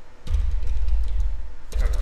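Computer keyboard keystrokes, a few short clicks, over a loud steady low rumble.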